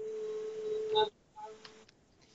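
A steady electronic tone with faint overtones, heard over a telephone link. It holds one pitch for about a second and cuts off, then a short, weaker beep follows.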